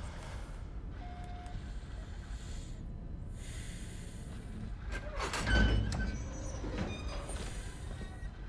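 Film soundtrack sound design without dialogue: a steady low rumble, a short beep about a second in, and a louder deep boom with high electronic tones about five and a half seconds in.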